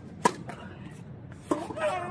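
Two tennis racket strikes: a sharp crack as the ball is served about a quarter second in, then the return hit about one and a half seconds in. The return comes with a short, shrill vocal shriek from the hitter.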